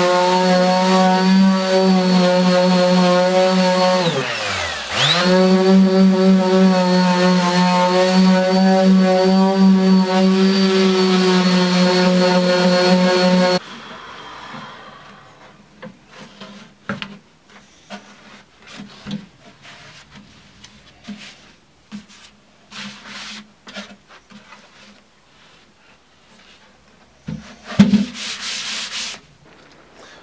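Small electric detail sander running with a steady motor whine while sanding old finish off a veneered wooden cabinet top. About four seconds in it slows almost to a stop and speeds back up, then it is switched off about thirteen seconds in. Knocks and handling sounds follow as the wooden cabinet is moved, with a loud bump near the end.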